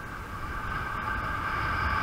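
Steady high-pitched whine from a kitefoil's hydrofoil, getting louder as the board picks up speed, over a low rumble of wind on the camera microphone.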